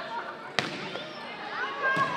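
Volleyball served overhand: one sharp smack of the hand on the ball about half a second in, with players' and spectators' voices calling out around it.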